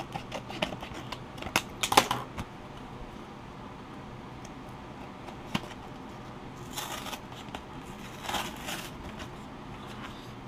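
A sealed paper "Dare to Tear" trading card being torn open by hand. A quick run of crisp crackles and small rips comes in the first couple of seconds, then two short tearing rips follow about two-thirds of the way through.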